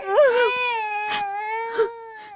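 A baby crying: one long, held wail that rises at the start, then stays at one high pitch before trailing off near the end.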